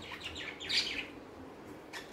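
Faint bird chirps, a few short high calls in the first second.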